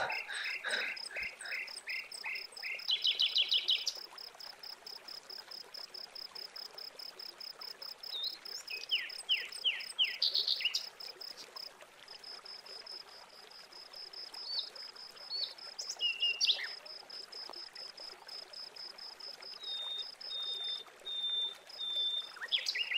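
Insects chirping in a steady, fast high-pitched pulse, with a few short downward-sweeping bird chirps around the middle.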